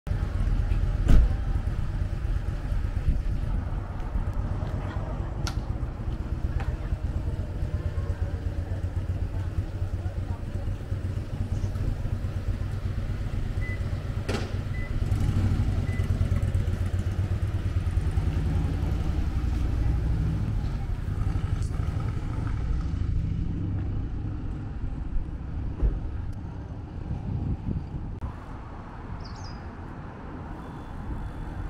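Outdoor ambience with a steady low vehicle rumble and a few sharp clicks, with a short run of high beeps about halfway through; it grows quieter near the end.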